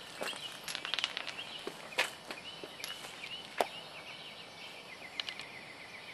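Quiet outdoor ambience with a few scattered clicks and taps, the sharpest about two seconds in and just past three and a half seconds in, over faint high wavering chirps.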